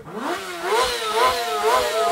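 Sport motorcycle engine being revved: its pitch climbs over the first half second, then rises and falls in quick repeated blips.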